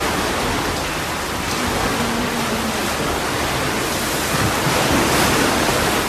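Storm-surge seawater rushing steadily and loudly through a breached wall and down a house's hallway.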